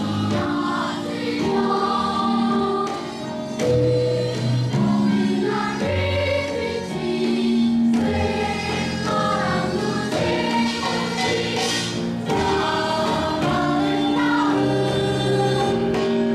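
Children's choir singing a slow, melodic Korean gukak-style song in unison with long held notes, accompanied by a small traditional Korean instrumental ensemble of zithers and flute.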